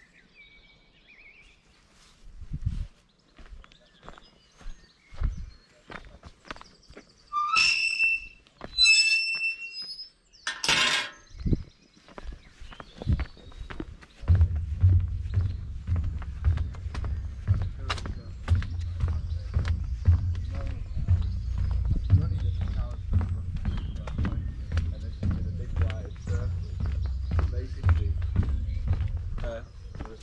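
A walker's footfalls and thuds on an outdoor path, with a few short high calls near the middle. From about halfway, a steady low rumble with many knocks as the walker crosses a wooden footbridge.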